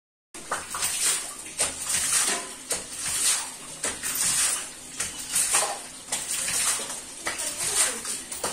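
Hand-boring a tube well: the boring pipe is worked up and down by a bamboo lever, and water and mud slosh and gush with each stroke, about once a second, each stroke starting with a sharp knock.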